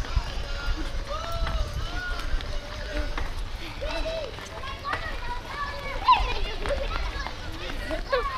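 Children's voices calling and shouting in short high-pitched cries while they run alongside, with the patter of running feet and a low wind rumble on the microphone.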